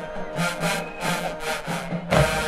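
A marching band playing in the stands, brass and drums in a steady rhythmic beat.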